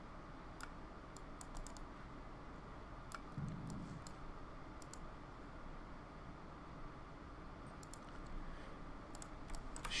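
Scattered faint clicks of a computer mouse and keyboard, in ones and small clusters, with a short low hum about three and a half seconds in.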